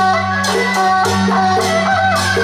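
Traditional Taiwanese procession band music: reed horns play a wavering, gliding melody over a steady low drone, with a cymbal-like crash about every half second.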